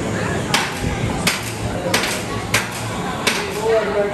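Five sharp mechanical clunks, evenly spaced about 0.7 s apart, from a Fury 325 roller coaster train in its loading station, over a steady hum of station noise.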